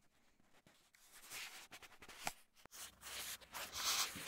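Rubbing and rustling handling noise with scattered sharp clicks from a handheld camera being moved about, louder about a second in and again near the end.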